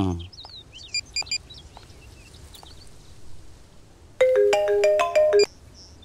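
Mobile phone ringtone: a short electronic melody of steady stepped tones, starting about four seconds in and lasting just over a second. Before it come faint bird chirps and a few short high beeps.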